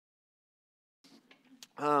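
Dead silence for about a second, then faint room sounds with a brief click, and a man's voice saying "um" near the end.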